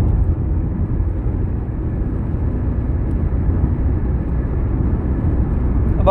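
Steady low rumbling background noise, even and unbroken, with its weight in the deep bass.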